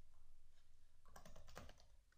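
Faint typing on a computer keyboard: a quick run of soft keystrokes, most of them in the second half.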